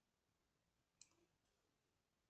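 Near silence, broken by a single computer mouse button click about a second in.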